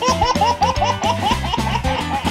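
A toddler laughing: a rapid string of short high giggles, about five a second, that thins out near the end, over background music.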